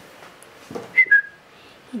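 A person whistling a short two-note call about a second in: a brief higher note, then a slightly lower, longer one.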